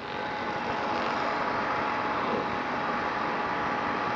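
Steady hissing background noise with a faint, steady high hum running under it.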